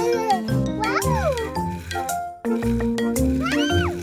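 Cheerful children's background music, with sliding pitched sweeps that rise and fall twice, about a second in and again near the end.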